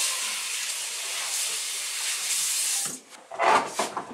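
Water running steadily for about three seconds with a hissing rush, then cut off, followed by two short, louder rushes of water.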